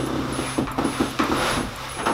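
A rapid run of ratchet-like clicks, about five a second.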